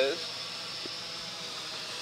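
MJX X601H hexacopter's six motors and propellers buzzing steadily in flight; pretty quiet for a drone.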